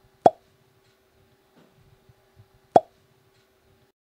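Two short pop sound effects, about two and a half seconds apart, over a faint steady hum.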